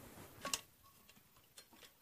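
A black domestic sewing machine gives a single sharp click about half a second in, then a few faint ticks near the end, as the fabric is set under its presser foot.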